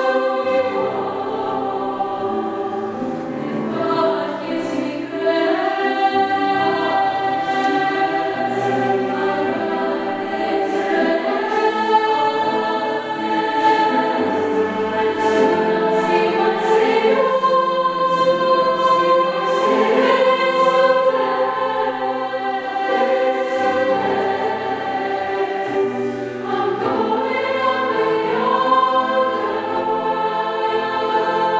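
Youth choir of mixed voices singing in harmony, sustaining long chords, with grand piano accompaniment underneath.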